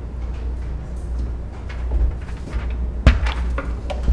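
Steady low hum on the chamber's sound system, then a sharp knock about three seconds in, followed by a few softer clicks, as the lectern microphone is handled.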